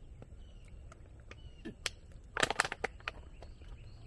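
Bicycle in motion: a steady low rumble with scattered clicks and rattles, and a short burst of louder clicking about two and a half seconds in.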